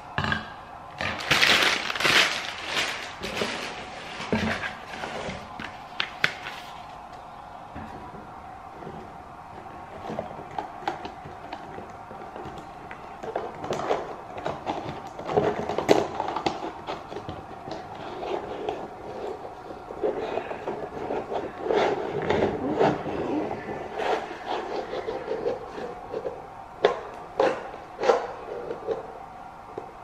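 Crumpled brown kraft packing paper crinkling and rustling as it is pulled off a pleated lampshade, loudest in the first few seconds. This is followed by quieter handling noise, rustles and light taps as the shade and its paper are handled on a table.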